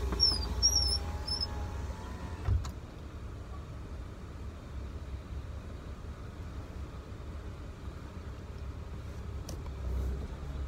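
Car engine idling, a steady low rumble heard inside the cabin, with a single thump about two and a half seconds in.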